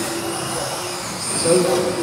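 Electric 1/10-scale RC buggies in the 17.5-turn brushless motor class, their motors whining as they race past.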